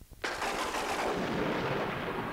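A sudden loud blast-like crash about a quarter second in, after a few faint ticks, carrying on as a dense noisy rumble that fades slowly: a sound effect opening a track on a vinyl novelty record.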